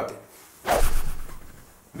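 A single whoosh sound effect, starting sharply about half a second in and fading away over about a second, marking a scene transition.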